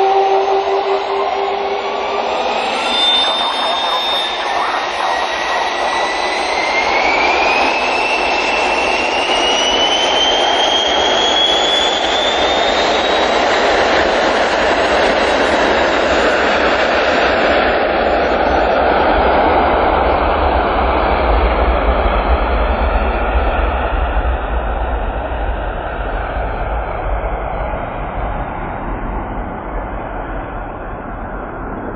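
Business jet's rear-mounted jet engines spooling up for a takeoff roll. A whine climbs steadily in pitch over about ten seconds under a building roar. The sound turns into a deep rumble in the second half and eases slightly near the end.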